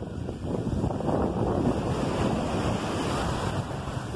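Small sea waves breaking and washing foaming up the sand close by, with wind on the microphone.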